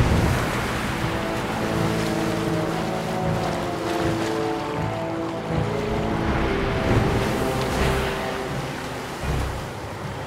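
Sea water rushing and splashing at the surface, under background music with long held notes.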